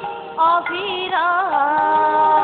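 Bengali kirtan singing: a woman's voice holds long, wavering notes over the group's musical accompaniment. After a brief dip at the start, the voice comes back in about half a second in.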